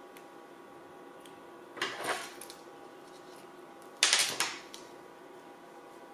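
Paper and adhesive tape being handled on a craft mat: two short rasping rustles about two seconds apart, the second louder and starting sharply.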